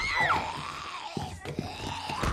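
A woman screams, the cry falling sharply in pitch in the first half-second, followed by a dull thump about a second in.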